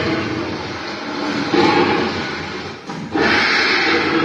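Animatronic Tyrannosaurus rex's recorded roar playing over loudspeakers, a rough noisy growl that swells about one and a half seconds in and again, more abruptly, after a brief dip near three seconds.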